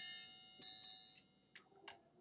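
Software percussion kit played back in a DAW: bright, ringing metallic ticks on a steady beat about twice a second, stopping about a second in. Two faint clicks follow near the end.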